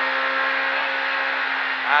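Proton Satria S2000 rally car's engine heard from inside the cabin, running at steady revs under way, over an even hiss of road noise.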